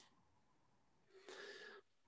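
Near silence, with one brief faint voice-like sound a little over a second in, heard over the online call.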